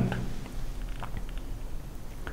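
Quiet room tone in a pause between speech: a steady low hum with a few faint clicks.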